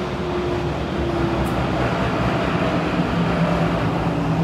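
Cabin running noise of a Kawasaki–CRRC Qingdao Sifang CT251 metro train: a steady rumble of wheels on rail with faint motor tones. A lower hum comes in about three seconds in.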